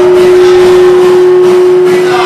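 Loud live band music from acoustic guitar and voices, with a single long note held steady over it.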